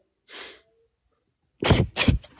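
A short soft breath, then near the end a loud, sudden, explosive vocal outburst of shock: a sharp gasp or exclamation with no words.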